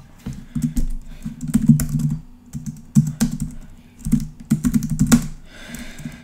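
Typing on a computer keyboard: quick runs of keystrokes with short pauses between them as code is entered.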